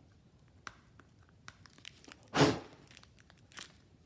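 Plastic phone case being handled and worked into place: faint scattered clicks and crinkles, with one short, louder crackling rustle a little past halfway.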